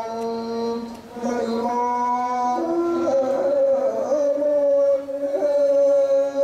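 A Buddhist monk's voice chanting through a microphone in long, held notes, stepping to a new pitch every second or two.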